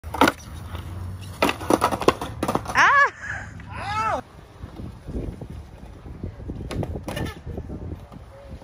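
Skateboard urethane wheels rolling on smooth concrete with a steady low rumble, broken by sharp clacks and knocks of the board and trucks on a ledge, a cluster in the first few seconds and two more near the end. Two short calls that rise and fall in pitch come about three and four seconds in.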